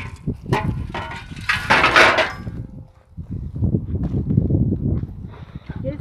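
Knocks and scraping from a broken frame being handled, loudest in a scrape about two seconds in; then a lower rumbling noise.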